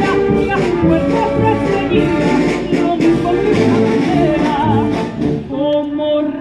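Live band playing a copla in full, dense harmony; the sound thins out briefly shortly before the end.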